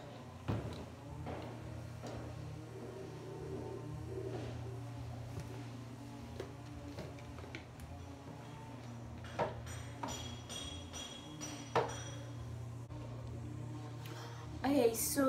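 Quiet room with a steady low hum and a few light knocks and clicks from a plastic shaker bottle being handled, the clearest about half a second in and twice near the end.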